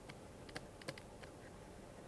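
Faint, irregular taps and clicks of a stylus on a pen tablet while writing by hand, over a steady low hiss.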